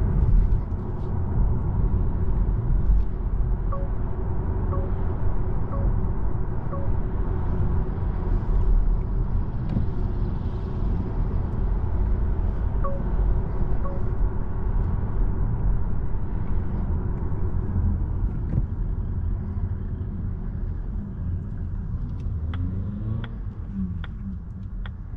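In-cabin road and tyre noise of a Volvo EX30 electric car driving on a city street: a steady low rumble with no engine note. A few faint ticks about a second apart come in a few seconds in, and two more around the middle.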